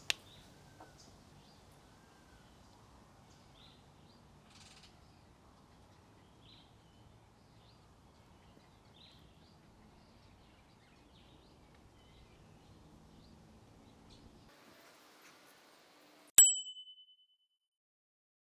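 Quiet outdoor background with a few faint short chirps, then near the end one sharp, bright ding that rings for about half a second.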